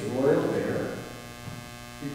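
A man's voice trails off in a reverberant hall at the start, then a pause in which a steady electrical hum is the main sound.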